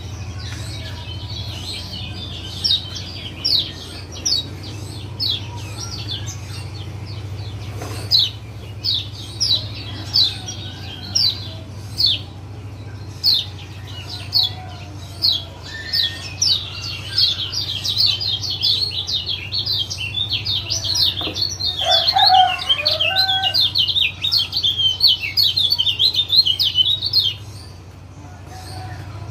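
Kecial kuning, a Lombok white-eye, giving sharp high 'ciak' calls over and over: spaced about a second apart at first, then coming fast and crowded together in the second half. A steady low hum runs underneath.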